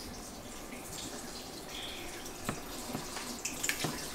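Bathroom sink tap running into the basin, a steady faint water noise with a few light clicks.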